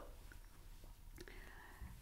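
Near silence: room tone with faint breathy sounds.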